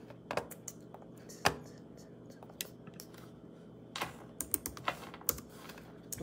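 Irregular keystrokes on a computer keyboard: scattered clicks with one louder key strike about a second and a half in, then a quick run of keystrokes near the end, as a passage is looked up.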